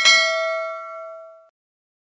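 A single bell 'ding' sound effect for the animated notification-bell click: one sharp strike that rings out and fades away over about a second and a half.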